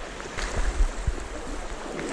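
Fast-flowing creek water rushing, a steady wash of noise, with a few short low bumps.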